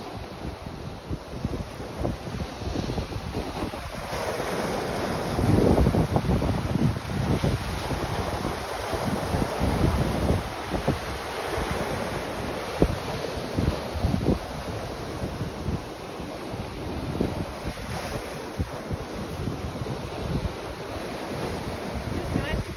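Sea waves breaking and washing over a flat rocky shore, a continuous rush, with wind buffeting the microphone in low gusts; the loudest surge comes about six seconds in.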